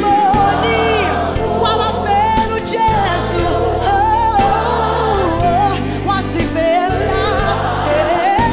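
Gospel choir singing a Zulu worship song live, with a lead voice sliding through melodic phrases above the choir, over a band with keyboards, bass and drums.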